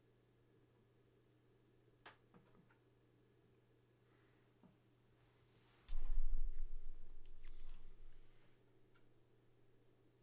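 A few faint clicks over quiet room tone, then a sudden low thump about six seconds in whose rumble fades away over about two seconds.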